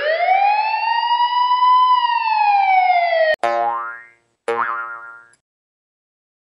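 Comedy sound effects: a long whistle-like tone that slides up, holds, then sinks slowly and is cut off by a click. Two shorter twangy, boing-like sounds follow, each fading out within about a second.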